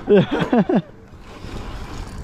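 A person laughing for under a second, followed by a low, noisy rumble of wind on the microphone.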